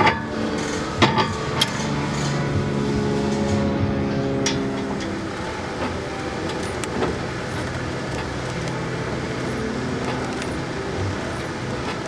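A vehicle engine running steadily at idle, with a few sharp metallic clicks in the first two seconds.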